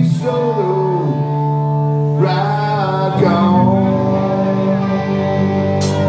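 A live punk rock band: a male voice sings a drawn-out line over held, ringing electric guitar and bass chords. The drums crash in just before the end.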